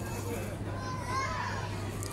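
Children's voices and chatter from a crowd, with one high child's voice rising about a second in, over a steady low hum.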